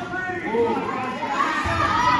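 Wrestling crowd with many children shouting and calling out over one another, echoing in a gymnasium.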